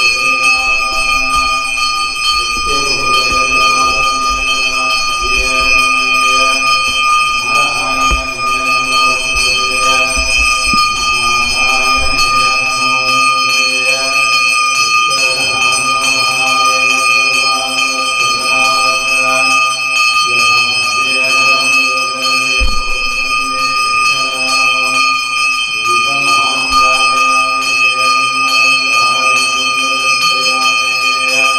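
Temple bell rung without pause during a Hindu lamp offering (aarti), a steady high ringing, over music whose phrases swell and fade every few seconds.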